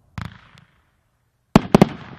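Booming Bulldog aerial firework shells going off: one sharp bang just after the start, then about a second and a half later a quick cluster of three louder bangs as a peony shell bursts.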